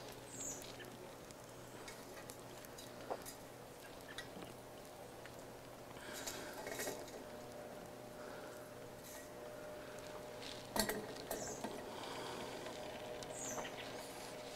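Faint crackling and ticking from the coals and small flames of a Solo Stove wood-burning stove, with a few light metal knocks near the end as the steel pot is handled on the stove.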